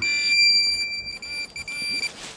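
Minelab Pro-Find 35 pinpointer held to the soil, sounding a continuous high-pitched beep with a few brief breaks near the end: it is signalling a metal target in the ground.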